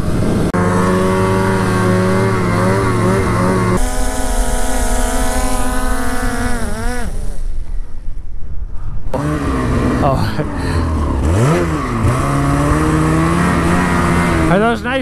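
A quadcopter drone's propellers whine at a steady pitch and spool down about seven seconds in, as the drone is caught by hand. From about nine seconds a 2022 Ski-Doo Freeride 154's turbocharged two-stroke engine runs and revs up and down as the sled climbs through the snow.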